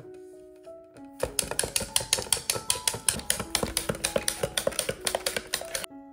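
Soft piano background music, with a fast, even run of sharp taps, about six a second, starting about a second in and stopping just before the end.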